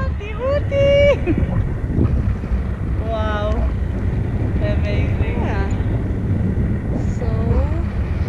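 Wind rushing over the microphone of a selfie-stick camera in paraglider flight, a steady low rumble, with short calls from a person's voice rising and falling four times.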